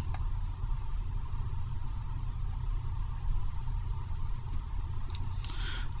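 Steady low hum with a faint even hiss: the background noise of the recording. A brief faint rustle comes near the end.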